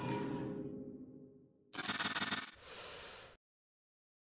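A whooshing transition sound effect, a short noisy burst about two seconds in that trails off over the next second. Before it, the broadcast sound fades out.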